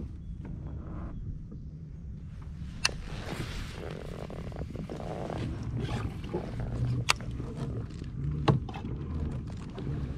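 Wind rumbling on the microphone, with three sharp clicks spread through.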